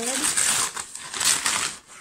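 Crumpled brown kraft packing paper rustling and crackling as hands pull it aside inside a cardboard box, a busy, irregular rustle that eases briefly near the end.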